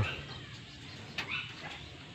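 Quiet background among pigeons in a loft, with one short click a little over a second in.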